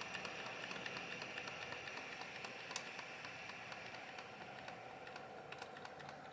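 Computer keyboard's Delete key being mashed during boot to get into the BIOS: a run of faint, irregular key clicks over a faint steady hum.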